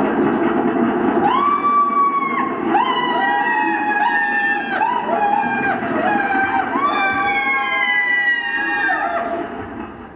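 Fire-engine siren sound effect over a rumbling engine. It starts suddenly, then several overlapping siren tones rise, hold and fall in sweeps of about a second each, and it fades out near the end.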